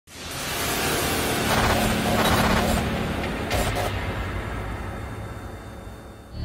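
Sound design for an animated logo intro: a wash of noise that swells in over the first second over a low hum, holds, then slowly fades away.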